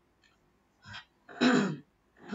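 A woman clearing her throat: a short sound about a second in, then a louder, longer one.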